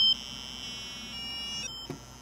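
Buzzy electronic tone from a small speaker driven by an Arduino Uno, jumping to a new pitch about every half second as a timer interrupt doubles the note's frequency through its octaves.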